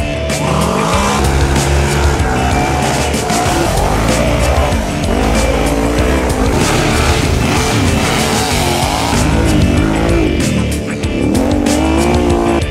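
Side-by-side UTV engines revving hard, rising and falling in pitch, as the machines climb a muddy hill course, with background music mixed in.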